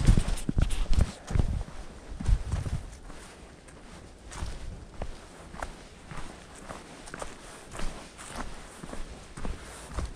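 Footsteps of a hiker walking on a dirt mountain trail littered with dry fallen leaves, at a steady walking pace. The steps are heavier in the first few seconds and lighter after that.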